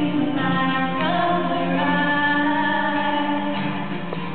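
Two female voices singing a slow song together live, holding long notes, over a strummed acoustic guitar.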